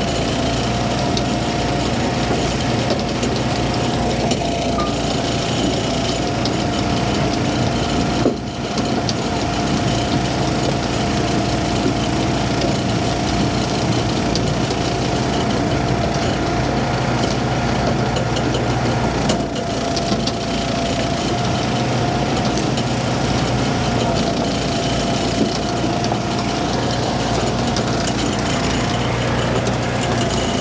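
Small gasoline engine of a hydraulic log splitter with a conveyor running steadily under work, with a constant whine over the engine hum. The sound dips briefly twice, about 8 seconds and 20 seconds in.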